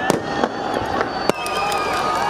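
Fireworks exploding over a large crowd: several sharp bangs in the first second and a half, over steady crowd noise with high whistling tones.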